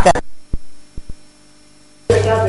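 A pause in speech: a woman's voice trails off at the start, then three soft low thumps in the first second, then a faint steady electrical hum.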